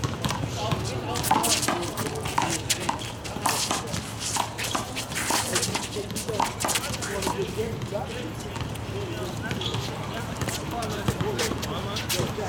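A one-wall handball rally: a rubber handball smacking off players' hands and the concrete wall in a run of sharp hits, with sneakers shuffling and scuffing on the court.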